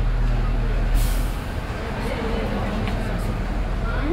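Inside an electric shuttle bus: a steady low hum, then a short, sharp hiss of air brakes releasing about a second in as the bus begins to roll, with faint voices in the background.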